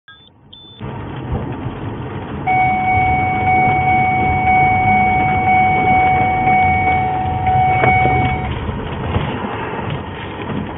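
Police patrol car driving, heard from inside the cabin: steady engine and road noise. It opens with two short high beeps, and a steady electronic tone sounds for about six seconds in the middle.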